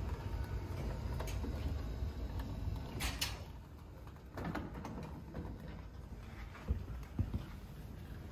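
Savioke Relay delivery robot driving along a carpeted corridor, with a steady low rumble for the first few seconds. A short hiss comes about three seconds in, and there are a couple of soft knocks near the end.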